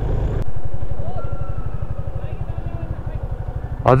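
Motorcycle engine running with an even low firing pulse, fading gradually as the bike slows. A voice cuts in near the end.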